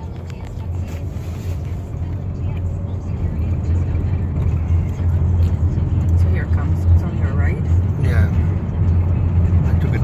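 Low rumble of a car driving, heard from inside the cabin, growing steadily louder, with faint voices in the background.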